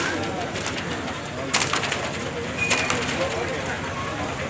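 Outdoor ambience of indistinct background voices and bird calls, with a few sharp clicks about one and a half seconds in and again near three seconds.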